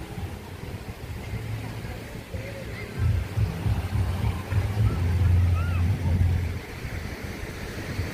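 Wind buffeting the microphone in gusts, a low rumble that is loudest from about three to six and a half seconds in, over the faint wash of surf.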